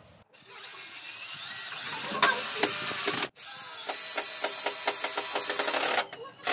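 Cordless drill driving a screw into a pine board. The motor rises in pitch as it spins up, runs with rapid clicking, stops briefly about three seconds in, then runs again.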